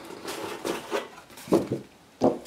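Handling sounds of a cardboard model-kit box as its top-opening lid is lifted off: faint scraping and rustling of card, with a louder brief knock about one and a half seconds in.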